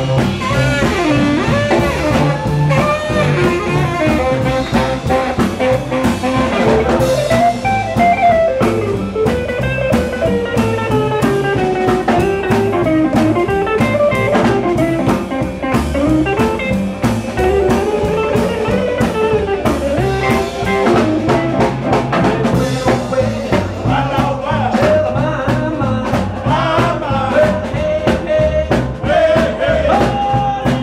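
A live rock and roll band playing an instrumental passage: saxophone and electric guitar over drums, loud and continuous.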